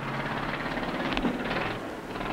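A steady background rumble of distant race car engines running at the track.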